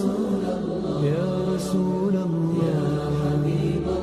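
Arabic nasheed (devotional song praising the Prophet) as background music: a voice drawing out a long, wavering melodic line with no clear words.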